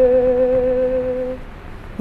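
The held closing note of a song: a voice sustaining one pitch with a slight vibrato over a steady lower note. Both fade out about one and a half seconds in.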